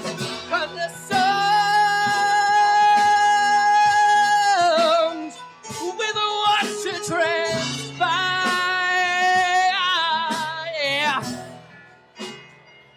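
A singer holds two long, high wordless notes over acoustic guitar accompaniment. The second note wavers into vibrato before the sound fades near the end.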